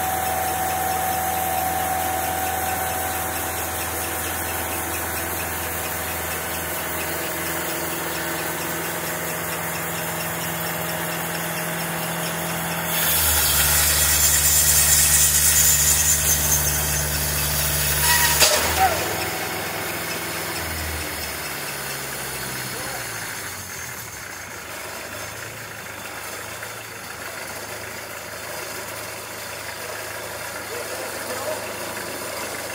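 Bandsaw mill's engine running steadily, then speeding up with a loud rushing saw noise for about five seconds. A sharp clank follows, and the engine winds down to a quieter low idle: the band blade slipping off its wheels in frozen pine with too little lubrication.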